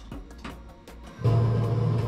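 KRL train-driving simulator's cab sound: a loud, steady, low-pitched drone starts abruptly about a second in as the controls are worked. Before it there is only faint background sound with light, evenly spaced ticks.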